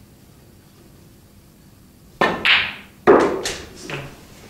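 A snooker shot: a sharp knock about two seconds in as the cue tip strikes the cue ball, followed over the next second and a half by several hard clicks and knocks of the balls colliding and striking the table.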